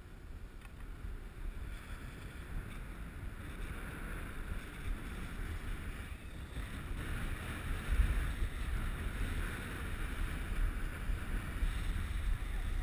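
Wind buffeting a moving action camera's microphone as it goes downhill on a ski slope, with the hiss of sliding over packed snow. The rumble and hiss build steadily and grow louder from about two-thirds of the way in as speed picks up.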